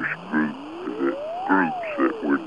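An added outro sound clip: a string of short, pitched, voice-like calls, with a single tone under them that slides up to a peak about one and a half seconds in and then slides back down.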